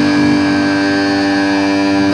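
Loud distorted electric guitar through a stage amp, holding one sustained, buzzing note or chord that rings steadily without change.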